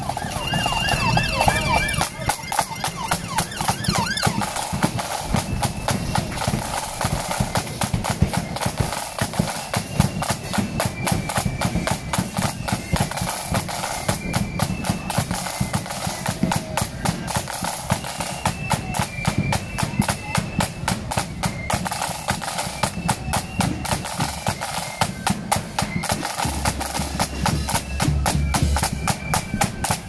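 Marching flute band: massed snare drums playing a dense, rapid rolling rhythm over a steady bass drum beat, with a flute melody faint above them.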